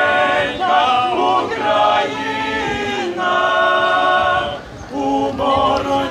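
A male vocal group of six singing a cappella in harmony, holding long chords, with a brief dip in the singing near the five-second mark.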